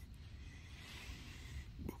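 Faint, steady background noise with a low rumble and no distinct event; a short intake of breath near the end.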